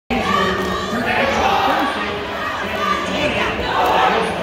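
A squad of high school cheerleaders shouting a sideline cheer together, with gym crowd noise underneath.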